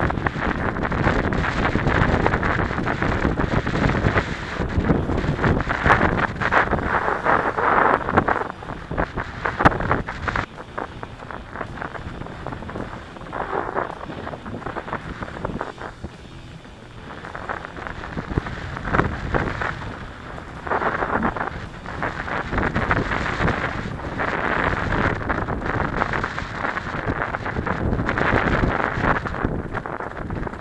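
Wind buffeting the microphone of a mountain-bike-mounted action camera on a fast singletrack descent, mixed with tyres on dirt and constant knocks and rattles from the bike over rough ground. It eases off for a few seconds around the middle, then builds again.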